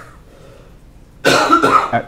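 A person coughing loudly: a harsh burst lasting under a second, starting after a quiet stretch.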